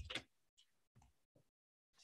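Near silence: a pause in speech, with the end of a spoken word at the very start and a few very faint ticks.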